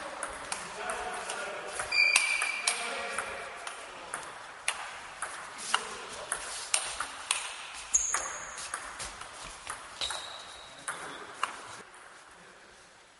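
Table tennis rally: a celluloid ball clicking sharply and irregularly off the rackets and the table, several hits a second. A short high squeak comes with the loudest hit about two seconds in.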